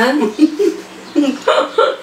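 Women's voices: a spoken phrase trailing off, then a few short bursts of laughter and murmured sounds.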